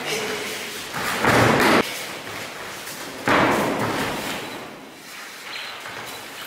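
Two heavy thuds of an aikido partner falling onto gym mats as he is thrown, the first about a second in and the second a couple of seconds later, fading more slowly.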